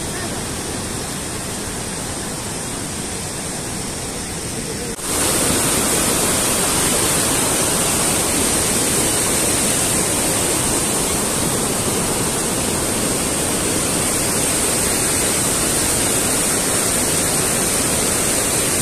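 Rushing whitewater of a mountain stream and waterfall: a steady rushing noise. About five seconds in it turns abruptly louder and brighter and holds steady.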